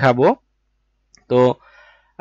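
A man's voice narrating in Bengali, broken by about a second of dead silence, then one short spoken syllable.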